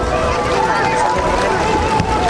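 Voices of a crowd of bathers talking and calling out in the open air, with a steady tone underneath and low rumble of wind on the microphone.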